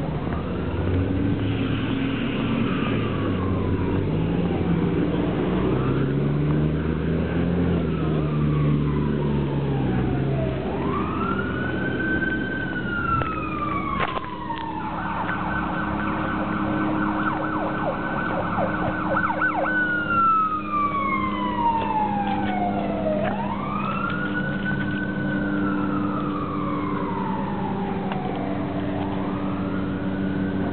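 Emergency vehicle siren wailing, rising and falling slowly every few seconds, switching to a fast yelp for about five seconds midway before going back to the wail.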